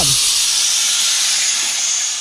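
Loud, steady hiss of air from a lowered Volkswagen Saveiro pickup's air suspension being let down, the body dropping toward the wheels. It starts abruptly and begins to fade near the end.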